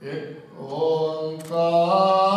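A man's voice chanting a Sikh prayer through a microphone, starting suddenly and settling into one long, slightly wavering held note from about half a second in. A brief click about a second and a half in.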